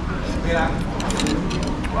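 Restaurant ambience: people talking in the background over a steady low rumble, with several short sharp clicks about a second in.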